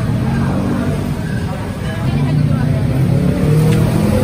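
People talking close by in a shop over a steady low rumble.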